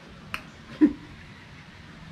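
A single sharp click, then a short low vocal sound a little under a second in.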